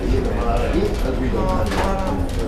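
People's voices talking, over a steady low rumble.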